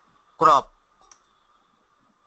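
A short spoken syllable, then faint computer mouse clicks a little after a second in, as a menu command is picked.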